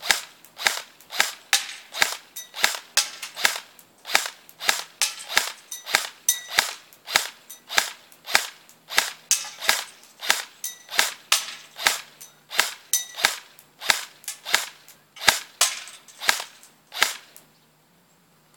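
Battery-powered airsoft rifle (AEG) fired one shot at a time, about two sharp cracks a second in a steady string. The shooter worries the shots are weak because the battery is undercharged.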